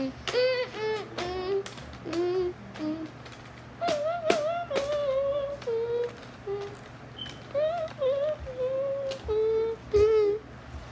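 A boy singing a tune without clear words in a string of short notes whose pitch wavers and slides, with a few sharp clicks between them, the loudest about four seconds in.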